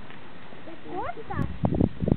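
People's voices in the background, with rising and falling pitch from about a second in, and a few loud low thumps near the end.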